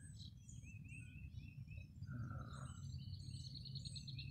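Several wild birds calling: scattered short high chirps, one brief lower call about two seconds in, and a fast trill of repeated notes from just before three seconds on.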